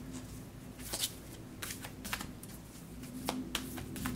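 A deck of oracle cards being shuffled by hand: a handful of light, irregular card clicks and slaps.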